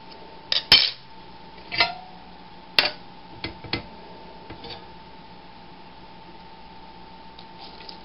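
Clinks and knocks of dishware, a glass mug being handled while tea is made: six or seven short strikes over the first five seconds, the loudest about three-quarters of a second in. A faint steady hum runs underneath.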